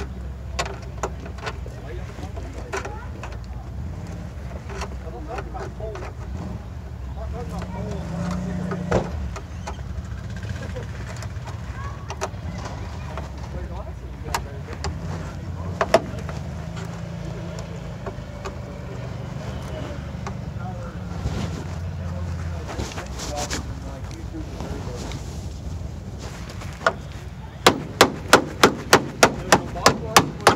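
Off-road vehicle engine running, a low rumble that shifts in pitch, with scattered sharp clicks and knocks. Near the end comes a quick run of loud sharp knocks, about three or four a second.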